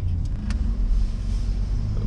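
Steady low rumble of a Mercedes-Benz GLB 250 driving, heard from inside its cabin: road and engine noise, with a faint click about half a second in.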